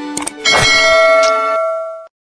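Subscribe-button sound effect: a short mouse click, then a bright bell ding about half a second in that rings on for about a second and a half before it cuts off.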